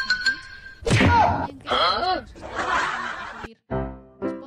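A single hard thump, followed by a voice giving gliding exclamations and a stretch of rough noise, with music underneath. The sound breaks off briefly near the end and a new passage of music begins.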